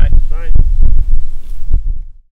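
Heavy, uneven low rumble of wind buffeting an outdoor microphone, with a few short snatches of speech.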